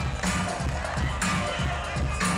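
Hip-hop music with a steady beat for a breakdance battle: low drum hits several times a second and a bright high burst about once a second.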